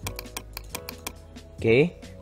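Computer mouse clicking in a quick run of sharp clicks, about five or six a second, ticking checkboxes in a list.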